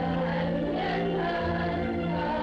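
Soundtrack music: a choir singing long held chords over a steady low note.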